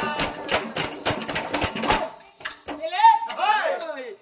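Folk drum and jingling percussion beating a fast, even rhythm under voices, cutting off abruptly about halfway through. A performer's voice then calls out in rising and falling tones.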